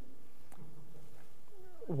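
A pause in a man's speech: a steady low background hiss, with his voice just starting up again at the very end.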